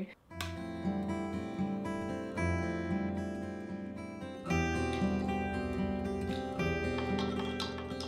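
Background music: an acoustic guitar playing chords that change about every two seconds.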